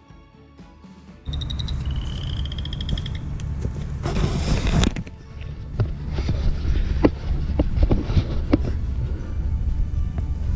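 Soft background music for about the first second. Then it cuts suddenly to louder outdoor sound of a handheld camera being carried, with handling knocks and rustling, loudest about four seconds in, plus a brief high trill.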